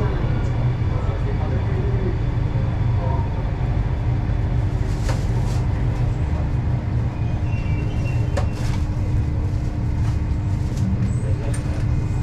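Metro train running into an underground station, heard inside the carriage: a steady low rumble with a constant hum, and a few light clicks.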